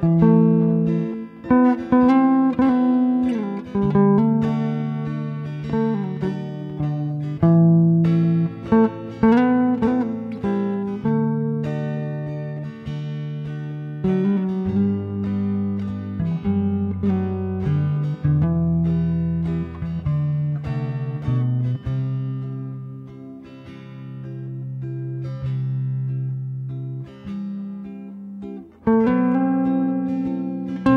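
Acoustic guitar playing an instrumental passage: picked notes ringing over held bass notes, with occasional strums; a brief drop in level near the end before the next strummed chord.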